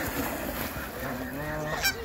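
Several Canada geese honking and calling over one another, with a longer honk late on and a brief sharp sound near the end.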